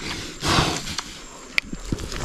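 A heifer lying trapped on her side blows out one heavy, noisy breath, followed later by a faint click.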